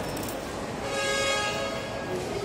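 A steady held musical tone with several overtones starts about a second in and runs on, over the general hubbub of a crowded hall.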